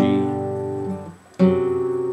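Acoustic guitar chords in open position: an A minor seven chord struck at the start and cut short about a second in, then a G chord struck and left to ring out.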